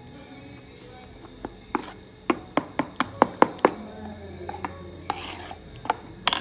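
A metal spoon stirring thick chocolate cake batter in a stainless steel bowl. It knocks against the bowl in a quick run of about eight sharp taps, about four a second, between one and a half and four seconds in, then scrapes once near the end.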